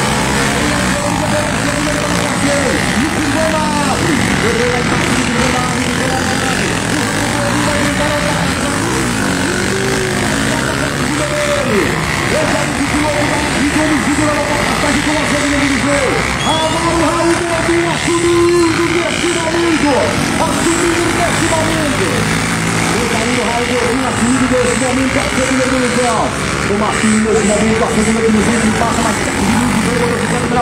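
Several trail dirt bikes racing on a dirt track, their engines repeatedly revving up and falling back, with indistinct voices mixed in.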